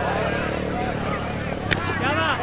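Motorcycle engine running steadily under overlapping crowd voices, with one sharp crack a little before the end.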